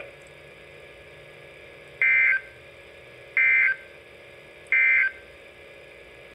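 NOAA Weather Radio receiver's speaker playing the EAS end-of-message code: three short, identical digital data bursts about 1.4 s apart, with low hiss between them, closing the severe thunderstorm warning broadcast.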